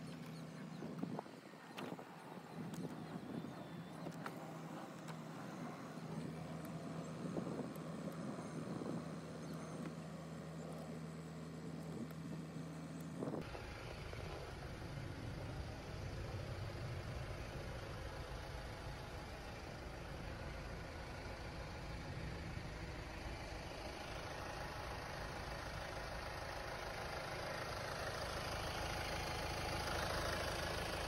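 For the first half, sped-up audio of switch clicks over a steady low motor hum as the door's power window and mirror switches are worked at triple speed. After an abrupt cut, a steady mechanical running noise beneath the lifted Hyundai Tucson, growing slightly louder toward the end.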